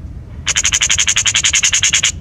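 Eurasian magpie giving its chattering rattle, a fast, even run of about a dozen harsh notes a second. It starts about half a second in and goes on for about a second and a half. Low wind rumble on the microphone lies underneath.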